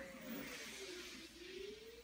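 Faint whine from a hoverboard's wheel motors, dipping and then rising again in pitch as it moves, over a soft hiss.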